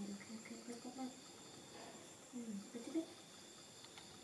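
Faint, short soft vocal sounds that dip in pitch, in two small clusters, over a steady thin high-pitched whine.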